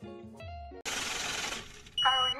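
Soft background music that cuts off less than a second in, replaced by about a second of steady hiss that fades away near the end.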